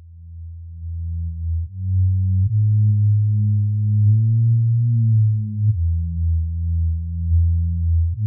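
Background beat: a deep, sine-like synth bass line that fades in over the first couple of seconds, then holds notes that step to a new pitch every one to three seconds.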